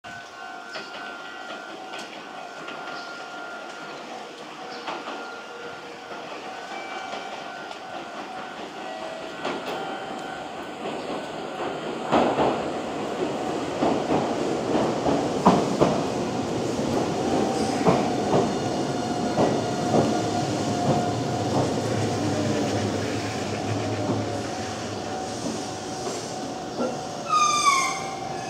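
A Meitetsu 1200 series electric train pulls into a station and brakes to a stop. Its wheels click over rail joints and points, growing louder about twelve seconds in. A steady whine joins in the second half, and a short rising squeal comes as the train halts.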